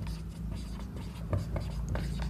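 Marker pen writing on a whiteboard: short, faint scratching strokes as letters are formed, over a steady low hum.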